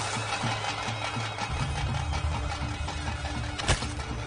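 Dramatic background film score with a rapid low pulsing beat, which gives way to a deeper, denser low rumble about a second and a half in. A single sharp hit sounds near the end.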